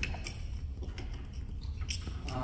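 A few faint, scattered clicks and light rustles of a paper sheet being handled, over a steady low room hum.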